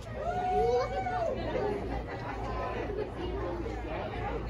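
Indistinct chatter of people's voices in a large indoor hall, with one high-pitched voice standing out about half a second to a second and a half in. A steady low hum runs underneath.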